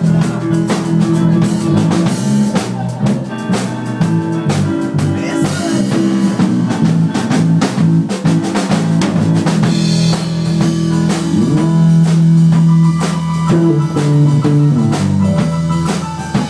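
A live blues trio jamming a hard, British-style blues shuffle: a drum kit with snare, rim shots and bass drum, driving guitar and bass, playing without a break.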